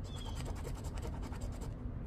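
Coin scraping the coating off a scratch-off lottery ticket: a rapid run of short scratches that stops shortly before the end.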